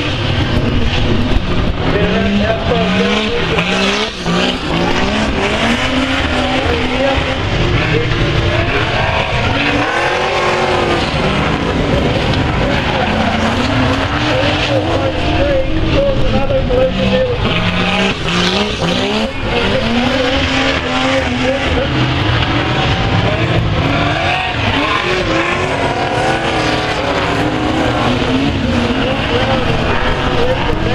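A pack of speedway saloon cars racing on a dirt oval, several engines revving up and down together as they go through the bend, loud and continuous.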